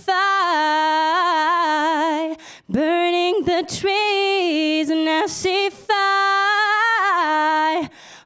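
A woman singing solo without accompaniment in three long phrases, holding notes with vibrato and embellishing them with ad-lib runs. There are quick breaths between the phrases.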